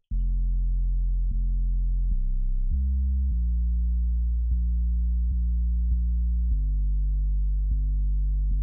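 Soloed 808 sub-bass line from a trap beat: deep, long sustained notes that step to a new pitch every half second to second and a half.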